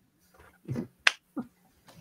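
A single sharp click about a second in, with a couple of faint short sounds around it in an otherwise quiet room.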